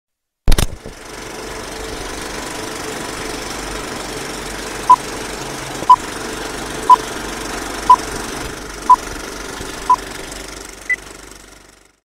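A film projector running with a steady mechanical clatter after a sharp click at the start, under a film-leader countdown: six short beeps at one pitch, one a second apart, then a single higher beep. The running noise then fades away.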